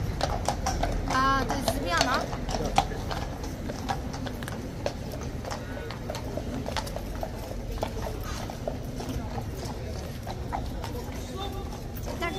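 A cavalry horse's hooves knocking and clip-clopping on stone paving in irregular steps, more of them in the first few seconds.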